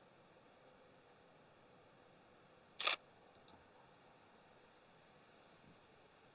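Nikon D5600 DSLR shutter firing once, about three seconds in: a quick double click of mirror and shutter.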